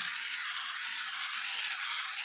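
Aerosol can of shaving cream spraying foam onto an aluminum tray: a steady hiss.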